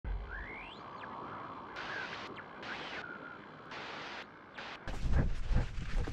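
Camera mounted on a dog's harness picking up handling noise as two dogs play-wrestle. There is quiet hiss with short breathy patches at first, then dense low thumps and rubbing from about five seconds in as the dogs tussle against the camera.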